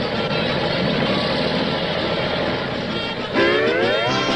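Cartoon sound effect of a column of tanks rolling through a cornfield: a steady, dense rumble. Near the end a rising pitched sound cuts in over it.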